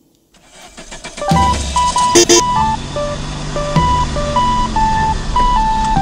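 Cartoon-style car sound effect under light background music: a car engine starting and building up over the first second, then running with a low rumble. It is joined by a simple, bright melody of single notes, with two short accents about two seconds in.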